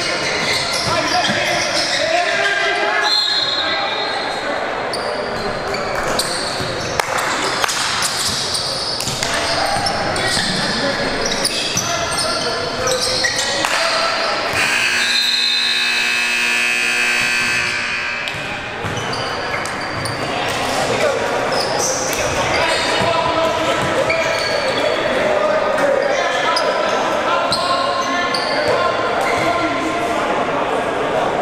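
Basketball game sounds in a large gym: ball bounces, short knocks and players' and spectators' voices throughout. About halfway through, a steady tone sounds for roughly three seconds.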